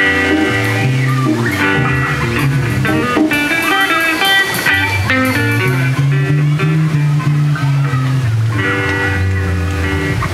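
Live band playing an instrumental blues-rock passage: electric guitars over bass guitar and drums, with a melodic lead line shifting from note to note.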